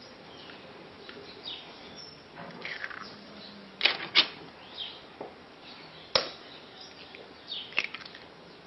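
Raw eggs being cracked with a fork over a glass mixing bowl: a few sharp taps and cracks, the loudest a pair about four seconds in and another about six seconds in.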